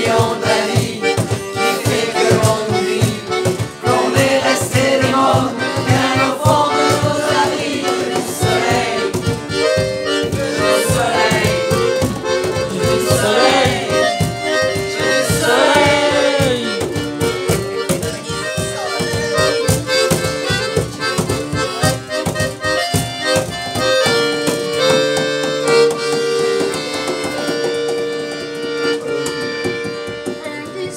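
Button accordion and strummed acoustic guitar playing a song together, with a small group singing along.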